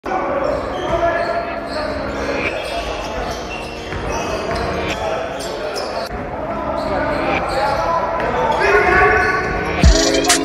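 A basketball bouncing on a wooden gym floor, with players' voices echoing around a large sports hall.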